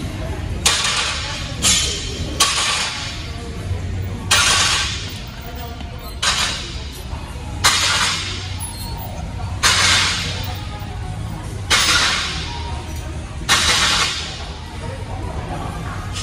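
Cable chest flys on a cable crossover machine: a sharp noisy hit fading over about a second, roughly every two seconds, in time with the reps, over steady background music.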